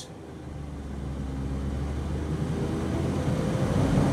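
2009 Smart Fortwo Passion's small 70-horsepower three-cylinder engine pulling under hard acceleration up a hill, heard from inside the cabin over road rumble. The engine note rises in pitch and grows steadily louder.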